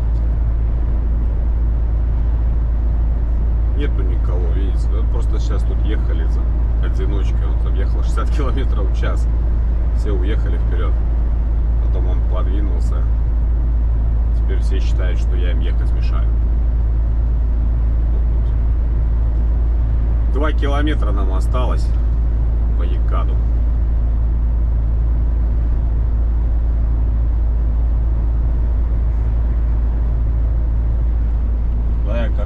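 Steady low drone of a MAN truck cab at highway cruising speed, engine and road noise heard from inside. A voice breaks in in short snatches from about four to sixteen seconds in and again around twenty-one seconds.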